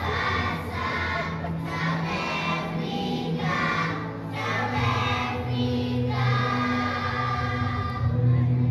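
A children's choir singing together in phrases, over a low sustained musical accompaniment.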